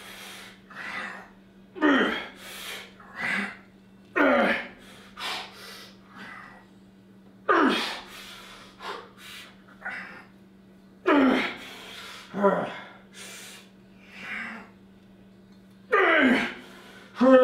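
A man's forceful exhalations and grunts, one per rep of weighted pull-ups. Each is short and drops in pitch, with quicker, softer breaths between them. They come further apart as the set goes on and he strains harder.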